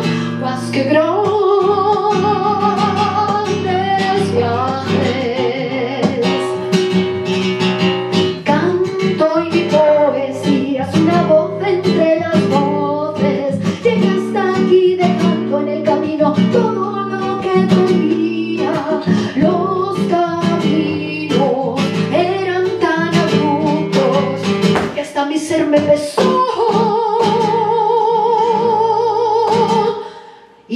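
Live flamenco song: a woman singing with wavering, drawn-out notes over an acoustic flamenco guitar, strummed and picked. A long held, wavering note comes near the end.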